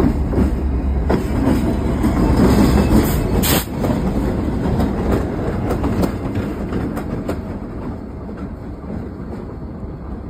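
BNSF diesel locomotives running light, with no cars, pass close by: a heavy engine rumble with the wheels clicking over the rails. It is loudest in the first few seconds, with one sharp click about three and a half seconds in, then fades as the units move away.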